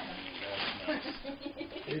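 Low, murmured voices in a room, with the rustle of gift-wrapping paper being handled and torn.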